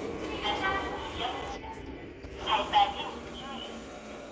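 A voice speaking in short phrases over the steady low hum of a subway platform.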